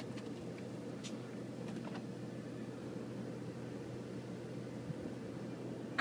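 Faint steady background hum inside a parked truck cab with the engine off, with a few soft clicks.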